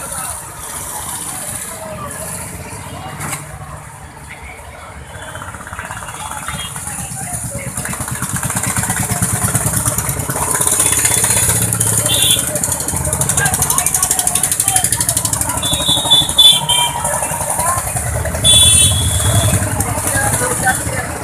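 Road traffic on a highway with people's voices: engines running and passing, growing louder about halfway through, with a few short high-pitched honks in the second half.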